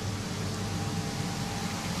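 Steady hum and hiss of pond filtration equipment running, with a faint steady tone over it.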